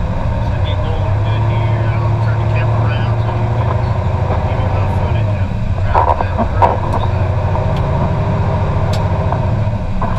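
Heavy-duty wrecker's diesel engine heard from inside the cab while driving: a steady low drone, with a few short rattles a little past halfway.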